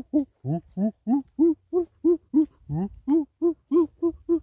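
A man's voice hooting a steady run of short 'hoo' sounds, about three a second, each rising and falling in pitch: a playful laughter-yoga vocalisation.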